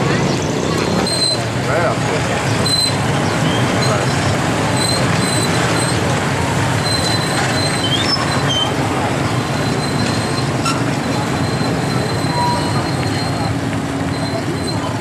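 Many small motorbike engines running together with a crowd of voices talking over them, a steady busy din. Short high-pitched beeps come and go every second or two.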